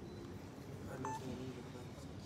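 A single short electronic beep about a second in, over a faint murmur of distant voices in a large room.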